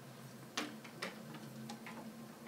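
A few faint, irregular clicks, about four in two seconds, over low room tone.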